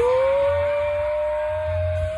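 A voice holding one long, high whooping note: it swoops up at the start, holds steady, and drops away at the end.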